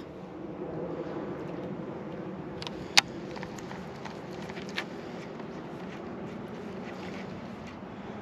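Electric trolling motor running with a steady hum as the boat creeps forward. A single sharp click sounds about three seconds in.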